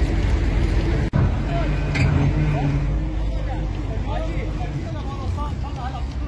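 Caterpillar 345D L excavator's diesel engine running with a steady low rumble that grows heavier for a couple of seconds after a brief dropout about a second in, with people's voices talking in the background.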